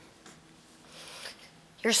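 A pause in a talk on a lapel microphone: low room tone with a faint steady hum, a short soft rustle about a second in, then a woman's voice starts near the end.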